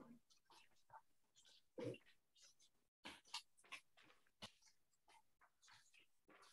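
Near silence from open meeting microphones, broken by faint scattered small noises: brief rustles and a few clicks, the loudest about two seconds in.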